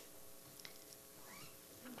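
Near silence: room tone with a faint steady hum, and a faint short rising-and-falling sound about a second and a half in.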